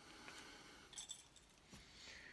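Near silence, with a few faint clicks and a light clink about a second in: a plastic-capped soda bottle and a drinking glass being handled.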